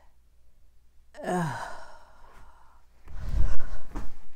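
A woman's exasperated sigh, its pitch falling, about a second in, after a flubbed line. Near the end comes a brief, louder low rumble on the microphone.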